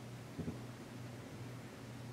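Quiet room tone with a steady low hum, and two soft low taps close together about half a second in.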